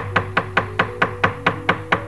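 Gamelan accompaniment to a Javanese shadow-puppet play: rapid, even clacks of the dalang's keprak, about six or seven a second, over held gamelan tones.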